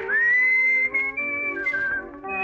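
A whistled melody over a dance orchestra. The whistle slides up into its first high note, then holds and moves between clear notes, dropping to a lower note near the end.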